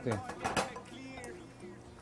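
Two utensils clicking and scraping in a ceramic bowl as a mayonnaise-dressed salad is stirred. A faint high warbling chirp comes about a second in.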